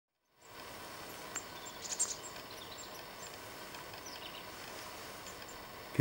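Faint outdoor ambience: a steady low hiss with a handful of short, high bird chirps, most of them around two seconds in.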